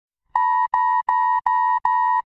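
Electronic alert beeping: five short, evenly spaced beeps of one steady pitch, about three a second, starting about a third of a second in.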